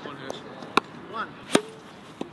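Cricket ball impacts in a fielding drill: two sharp knocks about three-quarters of a second apart, the second the louder, with a man's short 'oh' between them.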